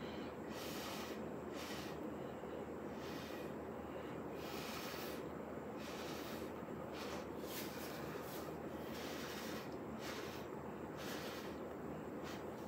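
Short puffs of breath blown through a stainless steel straw onto wet acrylic paint, coming every second or two.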